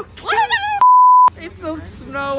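A single steady electronic beep, about half a second long, cutting into talk with all other sound muted under it: an edited-in censor bleep covering a word.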